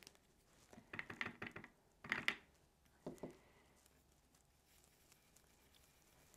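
Faint handling of a small ink cube and blending brush: a few soft taps and scrapes in the first three seconds, then near quiet.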